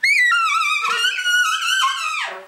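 Tenor saxophone blown into a deliberate high squeal of the kind used in free jazz: one loud, piercing held tone that starts suddenly, wavers and shifts a little in pitch, and fades just at the end.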